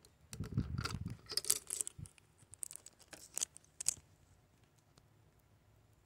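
Handling noise from a camera being lifted off its stand and moved down close over the table. A burst of bumps and rustling comes in the first second, then scattered clicks and scrapes that stop after about four seconds.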